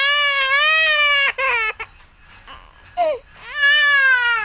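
A toddler crying loudly: a long wail, a short sob after it, a lull of about a second, then a brief cry and another long wail near the end.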